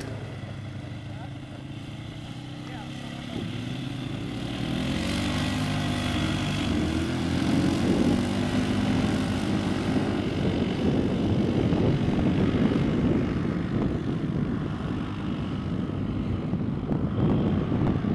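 ATV engine running and revving as the quad drives across a sand dune, its pitch rising and falling with the throttle. It grows louder about four seconds in and stays loud.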